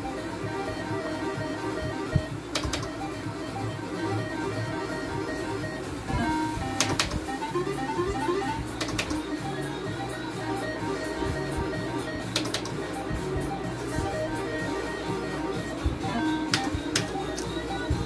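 Electronic slot machine's game music and jingles playing steadily while the reels spin, with a few sharp clicks scattered through and a quick rising run of notes about seven seconds in.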